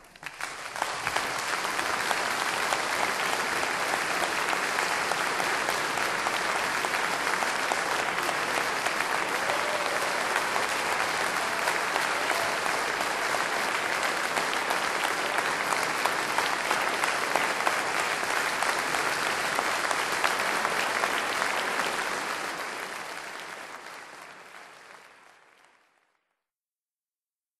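Concert audience applauding steadily after the final chord of an orchestral piece, the applause fading away over the last few seconds.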